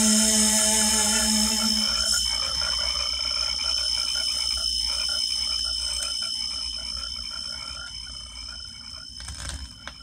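Electronic track from a vinyl record fading out. A held low synth tone stops about two seconds in, leaving a rapid pulsing synth texture over steady high tones that grows steadily quieter.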